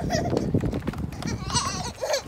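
A toddler's high-pitched squeal, short and wavering, near the end, over a low rumbling noise.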